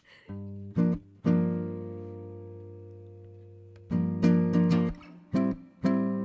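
Acoustic guitar played fingerstyle, opening a song. About a second in a chord is struck and left to ring, fading slowly; then comes a quick run of plucked notes, and a fresh chord near the end rings on.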